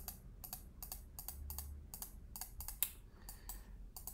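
Irregular clicks and taps from a computer keyboard and mouse, a dozen or so, with one sharper click about three quarters of the way through.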